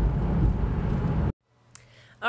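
Steady low rumble of road and engine noise inside a moving car's cabin on a snow-covered road, cutting off abruptly just over a second in.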